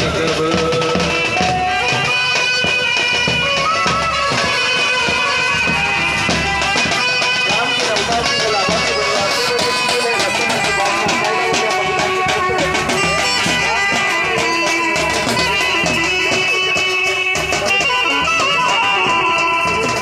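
Indian band music: a reedy lead melody of held notes over a steady drum beat, from a brass band with drums.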